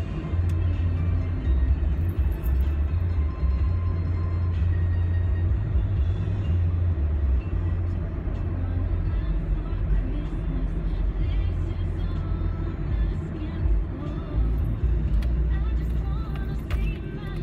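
Steady low rumble of a car's road and engine noise inside the cabin while driving.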